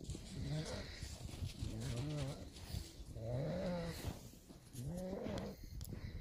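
An animal's voice: about four short, low calls, each gliding up in pitch and back down.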